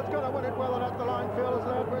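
Speech only: a horse-racing commentator calling the finish at a fast pace, over a steady low hum.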